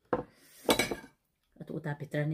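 Metal spoon clinking against a ceramic bowl and plate while serving curry, two ringing clinks in the first second.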